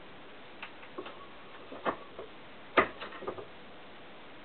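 A scatter of short metallic clicks and clinks from a ring spanner and the metal end fitting of a steel-braided brake hose being handled. The two loudest clicks come a little under two seconds in and near three seconds in.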